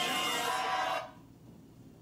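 Song with singing from a TV set, recorded off the screen, stopping abruptly about a second in and leaving only faint room hiss.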